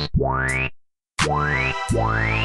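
Electronic beat from FL Studio playing: synthesizer notes that each open with a quick upward pitch sweep, over a low bass. The beat drops out to silence for a moment near the middle, then comes back with two more sweeping notes.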